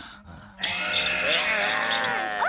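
A cartoon Smurf's long, wavering, sleepy yawn, starting about half a second in and sliding down in pitch.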